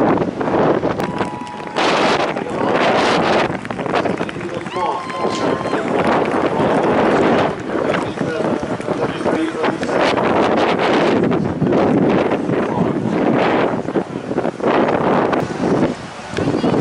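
Wind buffeting the camera microphone in uneven gusts, with indistinct voices in the background.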